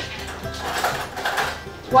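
A kitchen drawer being opened and cutlery rattling inside it, over steady background music.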